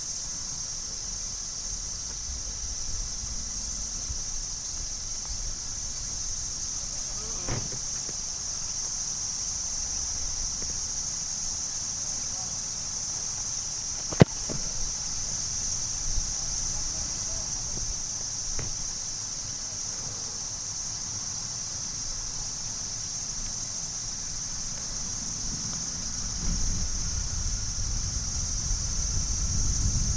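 A single sharp thud of a boot kicking a ball off a tee, about halfway through. It sits over a steady high-pitched insect drone and low wind rumble, which grows louder near the end.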